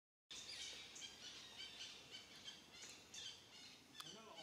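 Faint, busy chirping of small birds: many short, high chirps overlapping one another, several a second.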